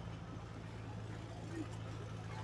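Engine running steadily with a low hum, with faint voices in the background.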